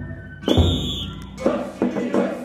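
Festival drumming with big drums: a run of heavy beats breaks off, one hit comes about a quarter of the way in with a brief high whistle-like tone, and the beat starts up again near the end.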